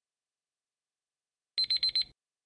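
Countdown timer alarm beeping as the timer runs out: a quick run of high electronic beeps, about eight a second, starting about a second and a half in.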